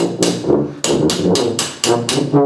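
Rapid hammer blows, about four a second with a short pause about half a second in, as glass is worked on the bench. Behind them a helicon plays low sustained notes.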